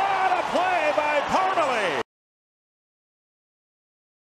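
Voices talking over background crowd noise, cut off abruptly about halfway through, followed by silence.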